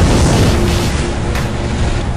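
Water surging and splashing as a giant trevally lunges up through the surface at a seabird fledgling, with background music underneath.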